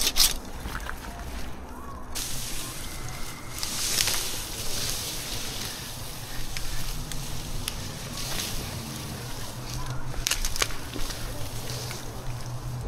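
Rustling of Douglas fir branches and needles as a climber handles the limb and rigging rope, with a short run of sharp scrapes about ten seconds in.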